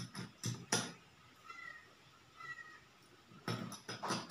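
A metal spoon clinking and scraping against small steel cups as sand is spooned into water: a few sharp clinks near the start and a quicker run of them near the end. In the quiet between, two faint, short, high calls about a second apart.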